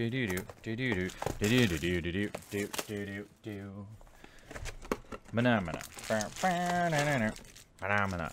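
A man sings wordless 'do do do' syllables over the crinkling and tearing of plastic shrink wrap being pulled off a booster box. The singing breaks off about halfway through, then starts again.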